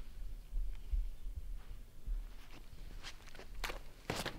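Footsteps of a disc golfer on the tee, with a few sharp steps in the second half as he runs up into his throw. A low rumble runs underneath.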